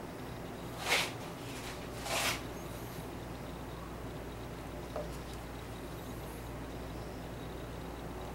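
A gloved hand handling seashells in a resin-filled plastic mold: two short scratchy rustles about a second apart near the start, then a faint tick, over a steady low hum.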